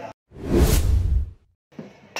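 A whoosh sound effect for an edited video transition: one swoosh with a deep rumble beneath it, starting a moment in and lasting about a second.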